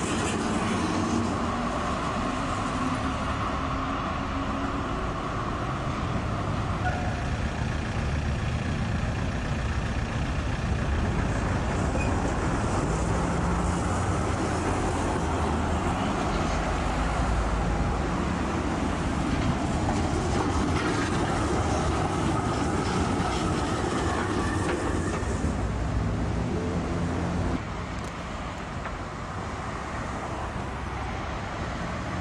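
Street trams running on the track close by: a long articulated tram rolls past with wheel-on-rail and running noise, with a faint whine in the first several seconds, as a second tram approaches. The noise drops off near the end.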